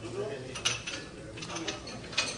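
Light clicks and clinks of glassware being handled, with a few sharper clinks among them.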